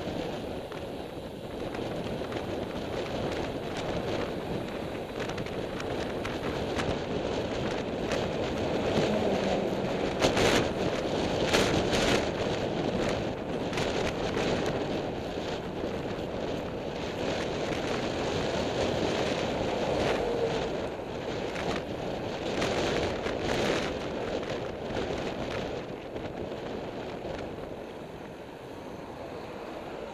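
Wind rushing over the microphone of a camera on a moving road bike, mixed with tyre noise on tarmac, swelling and easing with speed. A few sharp knocks or clicks come through around the middle and again a little later.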